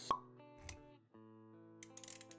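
Sound-design music for an animated intro, with held notes over a low bass. A sharp pop sounds right at the start, and a softer hit with a low rumble follows about half a second later.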